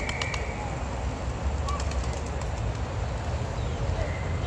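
Feral pigeons flocking on a paved plaza, with a quick run of wing flaps near the start, over a steady low rumble.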